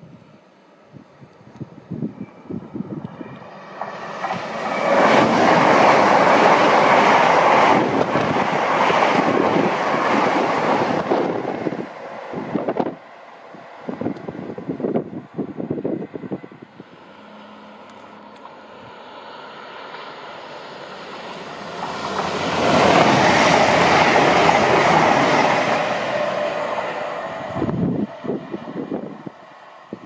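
An LNER Azuma (Class 800/801) high-speed train passes through at speed with a loud rush that builds over a couple of seconds, holds, then dies away. About ten seconds later a second train passes just as loudly.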